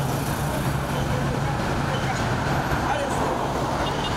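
Steady road traffic on a city street: cars and motorcycles driving past, a continuous hum of engines and tyres with a low, even engine drone underneath.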